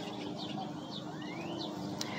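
A lawnmower engine running faintly and steadily in the background, with a few short bird chirps and one rising bird whistle near the end.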